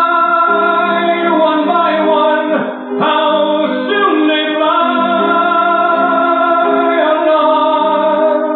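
Slow ballad music with sustained singing: long held notes in close harmony, changing chord about once a second, in a dull-sounding old live recording.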